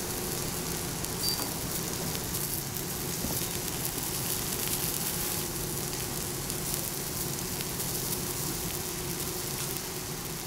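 Cubes of raw meat searing on a hot cast-iron griddle: a steady sizzle full of fine crackles, with a faint steady hum beneath.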